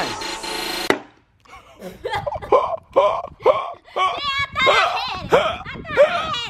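A rising whoosh ends in one sharp smack about a second in, a hammer hitting a grapefruit, followed after a short pause by a run of laughter.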